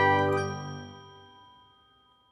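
Closing chord of a logo jingle: bright, bell-like chimes ringing out together and dying away over about a second and a half.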